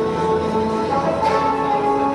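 Music playing: a slow melody of held notes, with no speech over it.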